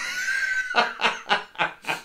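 A man laughing hard: a high, drawn-out rising squeal that breaks into a run of short laughs, about four a second.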